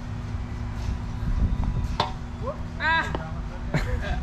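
A putter strikes a mini-golf ball once, a single sharp click about two seconds in, over a steady low rumble.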